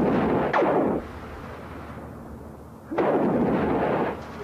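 Sci-fi laser-gun blast sounds: a noisy blast with a quick falling zap ends about a second in, and another blast starts about three seconds in.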